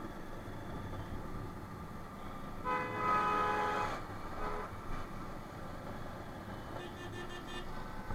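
Motorcycle riding through traffic, with steady engine and road noise, and a vehicle horn honking for about two seconds near the middle. A fainter, higher, pulsing horn-like sound comes near the end.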